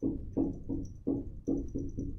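A marker writing on a whiteboard: a quick run of short, low, hollow-sounding knocks, about six in two seconds, one for each stroke as the tip meets the board.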